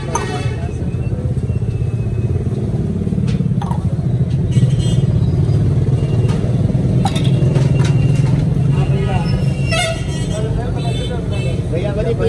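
A steady low rumble of a motor vehicle engine running close by, over street noise, with a few sharp clinks of a spoon on steel serving plates.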